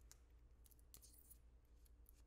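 Near silence: a few faint small clicks of a plastic mascara tube being handled in the fingers, over a low steady room hum.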